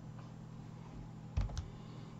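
Two quick mouse clicks, a fraction of a second apart, about one and a half seconds in, over a faint steady electrical hum.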